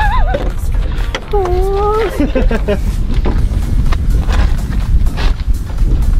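Men laughing, with one drawn-out vocal sound rising in pitch about a second in, over background music.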